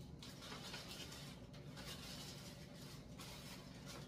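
Faint crinkling of a clear plastic wrapper as a small gift is unwrapped and handled, a few light rustles over a low room hum.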